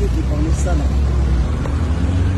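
A voice singing a wavering melodic line over a steady low rumble.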